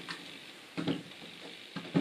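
A small plastic drone being handled and turned by hand on a tabletop: a few faint, short knocks and rubs, one about a second in and a sharper one near the end.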